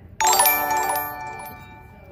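Live-stream donation alert chime: a bright electronic chime strikes about a quarter second in and rings out, fading over about a second and a half, announcing a Super Chat donation.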